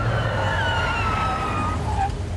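Car tyres screeching as a Porsche 911 brakes hard and skids to a stop, the screech starting suddenly and falling slowly in pitch before fading near the end, with a low rumble underneath.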